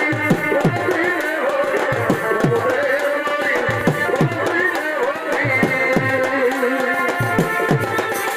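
Live folk drum-and-melody accompaniment for a Purulia Chhau dance. Deep drum strokes drop in pitch, about one or two a second, under a wavering melody line.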